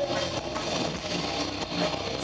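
Live rock band playing an instrumental stretch with no singing: electric guitars, bass guitar and drums.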